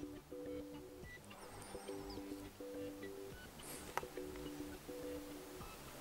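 Quiet background music: a soft melody of short held notes. There is a single sharp click about four seconds in.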